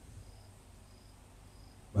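A cricket chirping faintly: three short, high chirps, evenly spaced, over quiet room tone.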